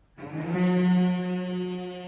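Orchestral brass entering after a hush with one loud, held chord. It swells to a peak about a second in, then eases off and sustains.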